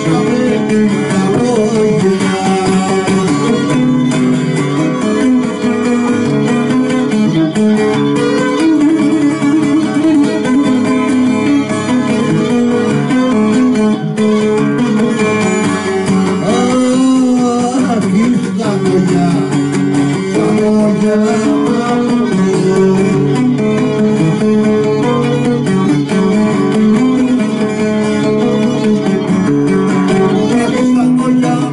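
Cretan lyra and laouto playing a Cretan folk tune together, the bowed lyra carrying the melody over the laouto's plucked accompaniment, with a man singing at times.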